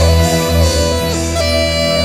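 Bulgarian gaida (bagpipe) playing a melody of held notes that step from pitch to pitch over a continuous low drone.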